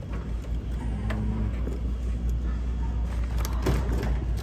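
Steady low rumble of shop background noise, with a short rustle of plastic packaging near the end as a hand touches the bagged dog treats.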